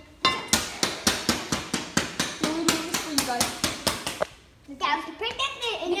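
An axe chopping repeatedly into cardboard on a hard floor, fast even blows at about four a second for about four seconds, then voices.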